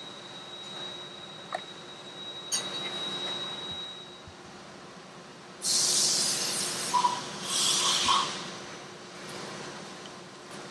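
Green plastic tape pulled off its roll in two rips, about a second each, a little past halfway through, as it is wrapped around a steel part.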